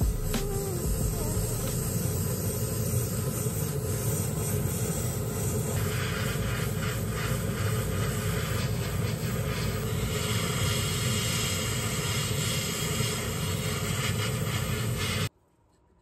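Hobby paint spray booth fan running steadily with the hiss of an airbrush spraying, the hiss growing stronger about six seconds in. The noise cuts off abruptly near the end.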